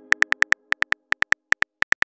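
Chat-app typing sound effect: a run of short, high, identical beeps, one per keystroke, coming in quick bursts of several a second.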